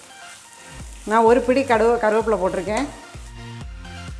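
Red chillies, curry leaves and shallots sizzling as they fry in oil in a kadai, stirred with a wooden spatula. Background music plays under it, with a pulsing bass beat and a voice from about a second in to nearly three seconds.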